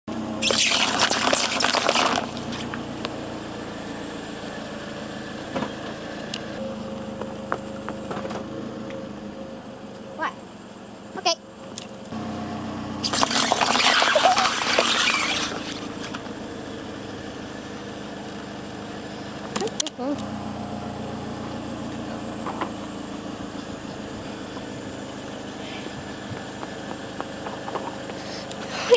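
A car engine idling steadily as the car's tyre rolls slowly onto paper cups on asphalt, crushing them with a loud crunch lasting about two and a half seconds about halfway through. A similar loud crunch comes near the start, and a few sharp clicks are scattered between.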